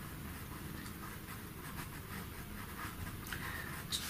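Pastel pencil scratching faintly across pastel paper in a run of short, soft strokes, laying light grey into a dark area of the drawing.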